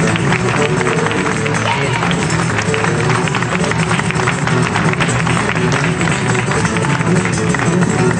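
Live blues band playing an instrumental passage, with guitar, at a steady loud level.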